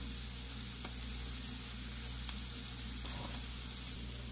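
Rabbit meat sizzling steadily in olive oil in a hot cast iron pan, an even hiss, with a few faint clicks.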